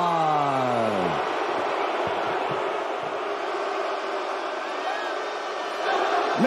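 Ring announcer's long, drawn-out call of the winner's name, falling in pitch and ending a little over a second in, followed by steady arena crowd noise and cheering.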